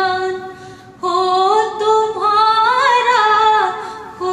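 A woman singing a Hindi film song into a handheld microphone. A held note fades away, and after a short breath a new phrase climbs to an ornamented high point about three seconds in, then falls again.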